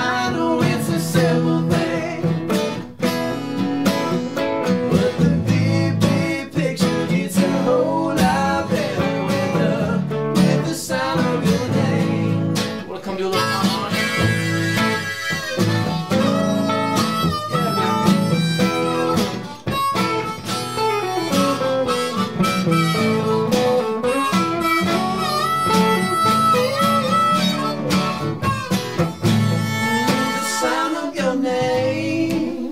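Instrumental break of a folk-rock song: a harmonica plays lead over a strummed acoustic guitar and a semi-hollow electric guitar.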